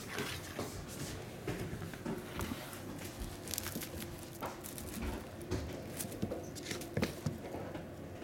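Norwegian Forest Cat kittens playing on a hardwood floor: irregular light taps, scuffles and paw patter as they scamper, pounce and swat at each other.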